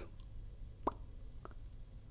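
Quiet room tone with two faint short pops, the first a little under a second in and a weaker one about half a second later.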